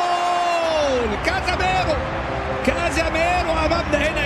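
A commentator's long drawn-out goal shout, held on one pitch and falling away about a second in, over a stadium crowd cheering. Shorter excited calls and crowd noise follow.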